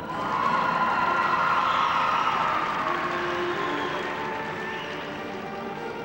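Audience applause and cheering in an ice rink over the skater's program music, breaking out suddenly and fading away over about four seconds.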